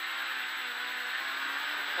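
Rally car engine held flat out at steady high revs in fifth gear, heard from inside the cabin over a steady hiss of tyres on gravel.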